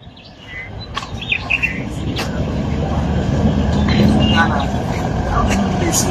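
A convoy of Toyota Land Cruiser SUVs approaching on a dirt road, engine and tyre rumble growing steadily louder. Birds chirp briefly now and then.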